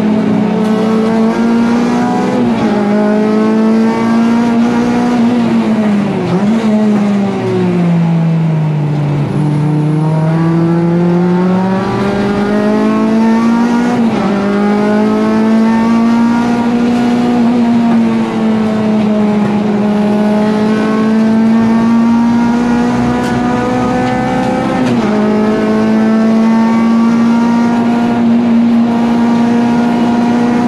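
Honda Civic EG race car's four-cylinder engine heard from inside the stripped cabin, running hard at high revs with a fairly steady pitch. It dips sharply at a few gear changes, and about a quarter of the way in the revs fall further and then climb slowly back up.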